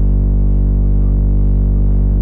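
House music in a beatless stretch: a steady, held low bass synth drone with the drums gone and the top end cut away.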